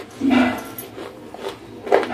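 Close-miked chewing of crunchy grey clay lumps: crackly crunches at uneven spacing, the loudest just after the start and again near the end, with a short low hum from the mouth between bites.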